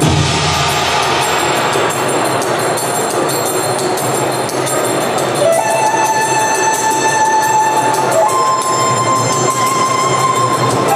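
Music played loudly over a hall loudspeaker system for a stage routine. It starts suddenly with a dense rushing sound, and long held notes come in about halfway, stepping up in pitch a little later.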